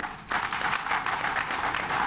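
Audience applauding, a dense patter of many hands clapping that starts about a third of a second in and holds steady.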